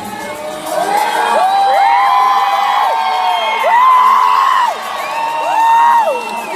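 Concert crowd cheering, with high-pitched screams from fans close by, each held for about a second, one after another, sliding up at the start and dropping off at the end.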